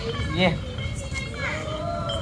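Voices: a couple of short spoken words, then one long drawn-out voice through the second half.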